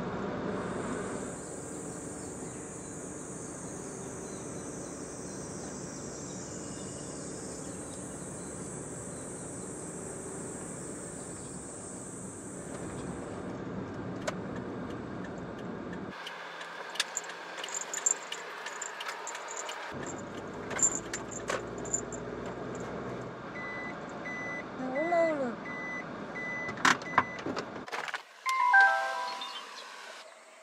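Kei van on the road: steady road and engine noise from inside the cab, with a high whine over it for the first dozen seconds. Near the end comes a series of evenly spaced beeps, then the interior door handle is pulled and the door unlatches with a loud clunk.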